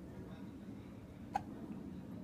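A baby's single short hiccup about a second and a half in, over faint low background noise.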